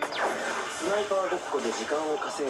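Audio of an anime episode played back: a voice speaking over quiet background music, opening with a short falling swish.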